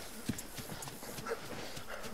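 Running footsteps of a man in boots on grass: quick, irregular thuds, several a second.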